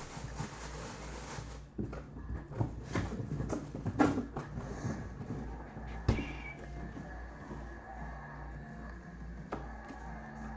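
Cardboard shipping box being handled, pulled across the table and set down: scattered knocks and rustles, with the loudest thumps about four and six seconds in, over a low steady hum.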